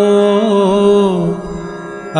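A male voice chanting a devotional Kashmiri hymn (vaakh), holding the last syllable of a line as one long, slightly wavering note over a steady drone. The voice fades out after about a second and a half, leaving only the drone.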